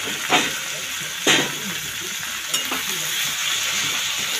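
Chopped taro flower (kochur phool) sizzling in hot oil in a metal wok while being stir-fried with a spatula. There are three short scrapes of the spatula against the pan: just after the start, about a second in, and about two and a half seconds in.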